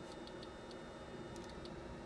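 Faint steady electronic tone from a small speaker driven by a Schmitt-trigger-and-integrator voltage-controlled oscillator through its filtered sine-approximation output, with a few small ticks.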